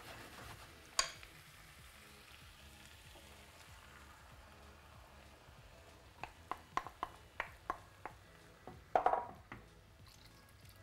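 Beef and vegetables frying quietly in a pan with a faint, steady sizzle. A wooden spoon knocks once about a second in, then gives a quick run of light knocks against the bowl and pan as tomato sauce is tipped in, with a louder burst near the end.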